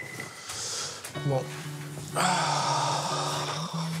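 Soft rustling of pillows and bedding as two people settle back onto a bed, then background music comes in about halfway through with steady held notes and is the loudest sound from then on.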